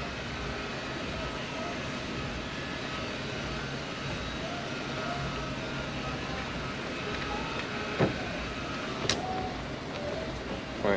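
Steady background hum of a repair shop, with two light clicks near the end as screws are worked by hand into a car door mirror's mounting.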